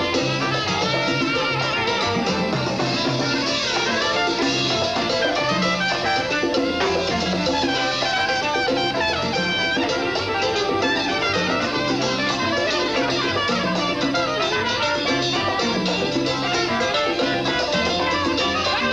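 Live Latin dance band playing an instrumental mambo passage: saxophone and trumpet over congas and drum kit, with violin and electric guitar, no singing.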